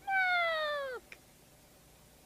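A cat meows once, about a second long, with the pitch falling steadily to the end.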